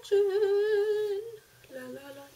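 A woman singing 'la' on one long held note lasting about a second, with a slight wavering, then another short 'la' near the end.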